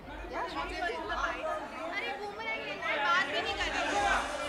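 Chatter of several voices talking over one another: a press crowd of reporters and photographers around a row of microphones.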